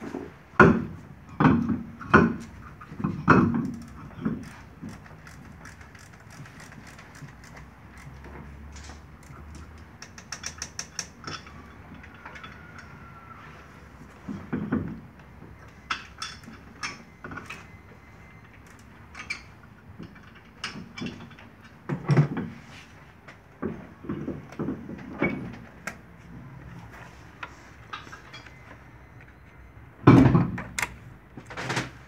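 Knocks and clunks of a car's front wheel being fitted by hand, with a quick run of sharp clicks about ten seconds in.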